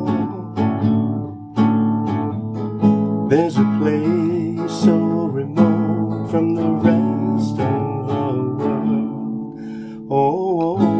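Acoustic guitar strummed in a steady rhythm of chords, with a man's voice singing along a few seconds in.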